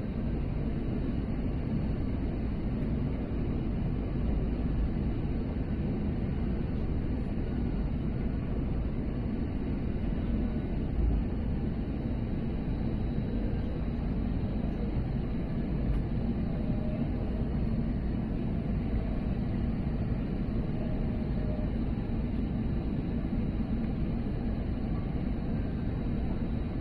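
Steady cabin noise of an Airbus A320neo airliner on final approach, with its Pratt & Whitney geared turbofan engines and the rush of air giving an even low rumble and a faint steady high whine.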